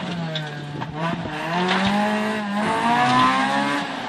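Honda Integra rally car's engine heard from inside the cabin, pulling through a stage. Its note dips about a second in, then climbs, drops briefly and climbs again as the driver accelerates.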